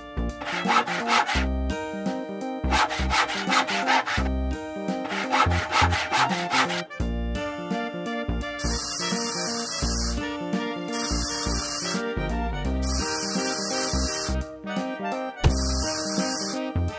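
Sawing, in three bouts of quick back-and-forth strokes over the first half, over background music. In the second half come four short bursts of high hissing.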